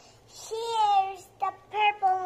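A young girl's voice singing wordless notes: one held note about half a second in that slides slightly down, then shorter sung bits near the end.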